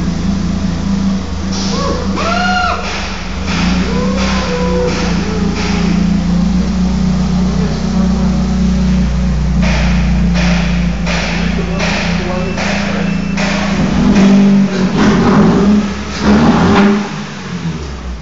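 A car engine idling steadily with the bonnet open, with a few louder surges in revs near the end. People talk over it.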